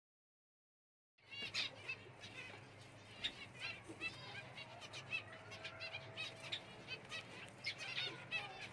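A flock of white Java finches (Java sparrows) chirping in an aviary: many short, high calls overlapping, starting suddenly about a second in, over a steady low hum.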